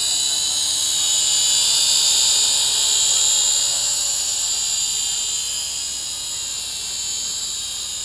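Syma X5HW quadcopter's small brushed motors and propellers whining steadily as it hovers close by, growing slightly fainter over the last few seconds as it moves away.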